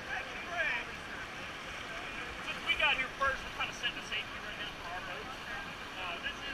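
Steady rush of whitewater from a river rapid, with snatches of people talking over it.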